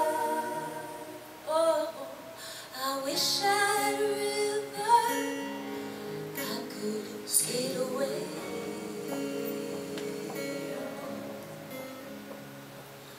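Live acoustic performance of a slow folk ballad: a woman singing long, held notes with a few sliding phrases over soft instrumental accompaniment.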